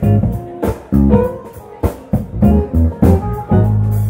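A live instrumental band playing a steady groove: electric guitar, bass guitar, keyboards and drum kit, with regular drum hits over the bass line.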